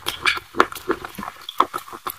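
Close-miked crunchy chewing of a hard white chalk-like stick: irregular crisp crunches and wet mouth clicks, several a second.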